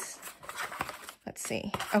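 Paper and thin cardboard rustling as a small paper box is handled and sticker sheets are pulled out of it, with a few light ticks.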